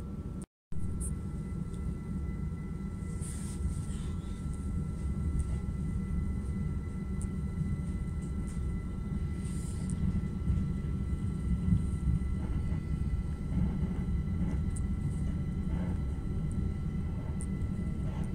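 Inside an electric passenger train running along the track: a steady low rumble with a faint, steady high whine and occasional light clicks. The audio cuts out briefly about half a second in.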